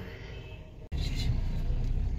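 Car cabin noise with the engine running, a steady low hum. About a second in, the sound cuts off for an instant and returns as a louder low rumble.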